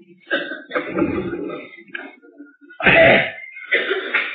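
An elderly man's voice clearing his throat and coughing in a few short bursts, the loudest about three seconds in.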